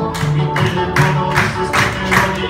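Live acoustic guitar music, played with a sharp, steady percussive beat about two and a half times a second; no singing.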